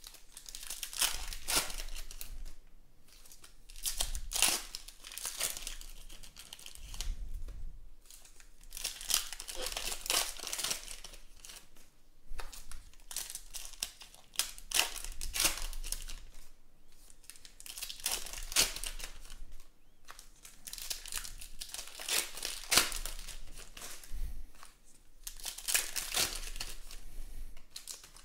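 Foil trading-card packs being torn open and crinkled by hand: a string of sharp crinkling and tearing noises that come and go in clusters.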